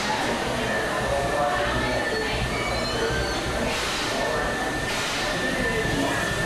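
Amusement-park train at its station: a steady low rumble with a long, high steady whine held from about a second and a half in, and brief surges of hiss. Crowd voices murmur in the background.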